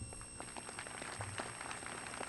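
Faint, scattered applause from an outdoor audience, a light patter of many hands clapping.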